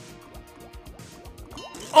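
Online slot game audio: background music with bubbly, dripping water sound effects and a run of quick ticks as the reels spin.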